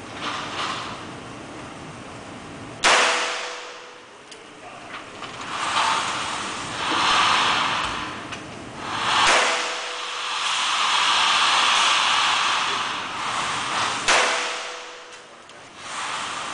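Three handgun shots in an indoor range, a few seconds apart, each a sharp crack followed by a brief ring.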